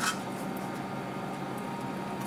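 A brief scrape or click of the CB radio's sheet-metal top cover being handled and lifted off the chassis, right at the start. After it only a faint steady background hum remains.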